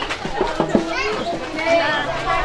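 Chatter of a crowd of children and adults, several voices talking and calling out over one another.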